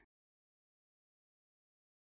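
Silence: no sound at all.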